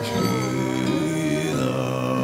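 Tuvan throat singing: a held low vocal drone with bright overtones sounding above it as a separate whistling line.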